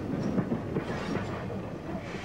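LBSC A1X Terrier steam tank locomotive moving slowly with a wagon: a steady rumble of running gear and wheels on rail with frequent irregular knocks.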